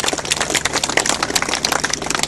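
Audience applauding: a dense, irregular patter of many hand claps.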